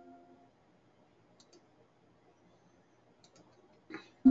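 Near silence (room tone) broken by a few faint, short clicks: a pair about one and a half seconds in and a small cluster near the end.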